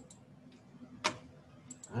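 A single sharp click about a second in, followed by two faint ticks near the end, over a faint steady hum.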